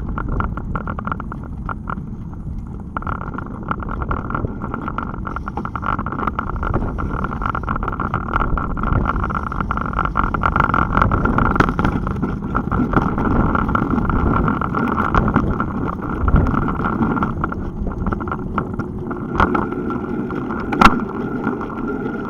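Riding noise picked up by a bike-mounted Garmin camera: wind on the microphone and tyre rumble over rough asphalt, with many small rattling clicks. A single sharp knock about a second before the end.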